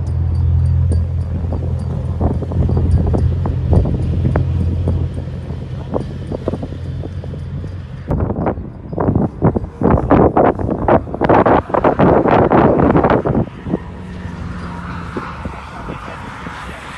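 Car engine drone from cars running on a track, heard from trackside, followed about halfway through by several seconds of heavy wind buffeting on the microphone.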